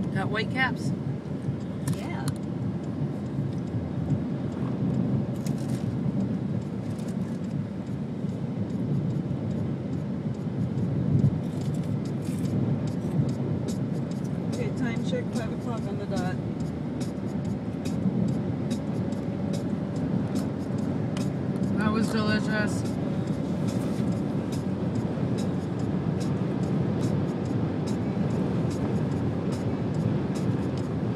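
Steady low road and engine rumble of a moving car, heard from inside the cabin, with a few brief faint voices now and then.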